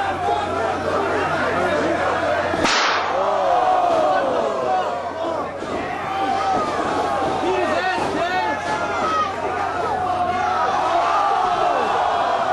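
Crowd of wrestling spectators shouting and cheering, many voices overlapping without a break, with one sharp crack about three seconds in.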